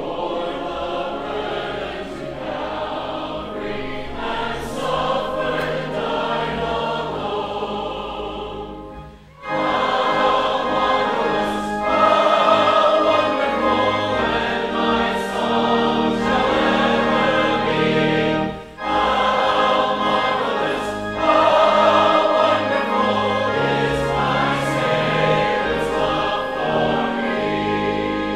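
Congregation and robed choir singing a hymn together with pipe organ accompaniment. The singing runs in phrases, with short breaks about nine and about eighteen and a half seconds in, and it is louder after the first break.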